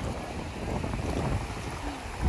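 Small waves washing in shallow sea water, with wind noise on the microphone.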